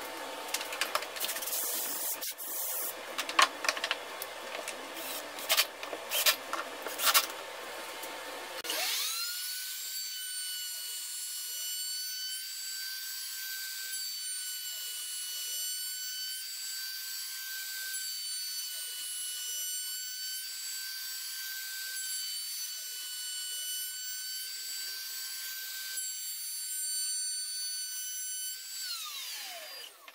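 A series of sharp knocks and clatter, then about nine seconds in a CNC router's spindle motor spins up to a steady high whine. It runs at about 20,000 rpm while a 1/2" straight carbide bit cuts a curved arch in a wooden table rail, and winds down with a falling pitch near the end.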